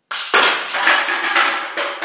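Homemade spring-powered airsoft shotgun firing a buckshot load of BBs: a sudden snap, then a burst of clattering and several sharp knocks as the shot strikes the milk jug and cans and scatters, with ringing that dies away.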